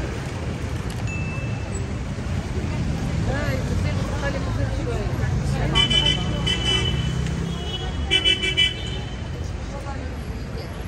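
Busy city street: a steady rumble of traffic and passers-by talking, with a vehicle horn sounding in short toots about six seconds in and again a couple of seconds later.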